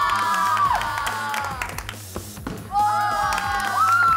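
Several women shrieking "oh!" in high, drawn-out voices, once at the start and again from about two-thirds of the way in, over background music. A few short knocks sound between the shrieks.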